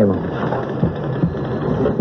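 A cardboard carton being set down on a table and handled, a continuous rustle and shuffle of cardboard, played as a radio-drama sound effect.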